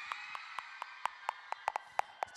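A dozen or so sharp, irregular clicks, over a faint steady background of the hall.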